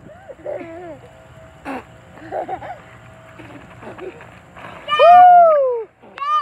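A young child's loud, drawn-out excited shout about five seconds in, rising briefly and then falling in pitch, after several seconds of faint children's voices.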